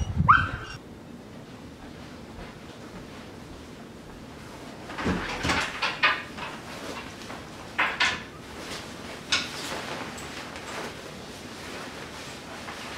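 A dog gives one short, high bark right at the start. After a few seconds of low room hiss, a string of rustles and knocks follows as a heavy coat is pulled on.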